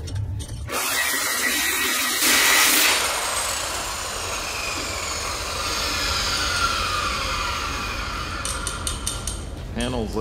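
Angle grinder fitted with a shrinking disc, worked over sheet steel and then spinning down, its whine falling over several seconds, with a few clicks near the end. This is metal shrinking: the disc heats the high spots of the stretched panel so they can be shrunk flat.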